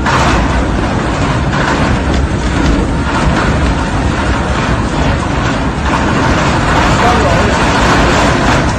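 Loud dust-storm wind blowing without a break, buffeting the phone's microphone with a heavy low rumble.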